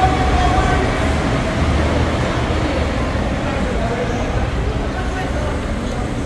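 Road traffic at a busy curbside under a concrete overpass: cars driving past and idling in a steady low rumble, with faint voices of people nearby.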